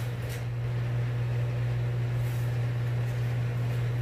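A steady low hum with a faint even background hiss, and no other event: the recording's background room tone.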